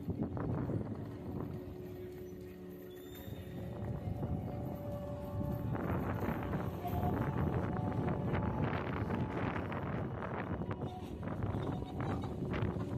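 Busy city-square street ambience, with a dense run of clattering knocks from about six seconds in.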